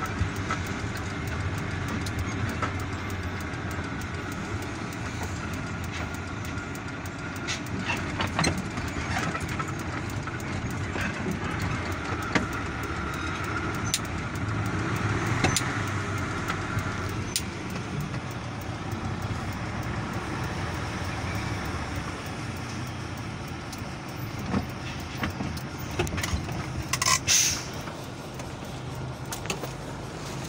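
Steady engine and road noise heard from inside a moving vehicle, with scattered rattles and clicks from the cabin. Near the end, as it slows into the station, a brief sharp high-pitched noise stands out.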